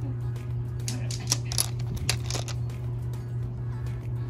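Steady background music and low hum, with a few light, sharp clicks of polished agate tumbled stones knocking together as they are picked up and handled over a basket of them.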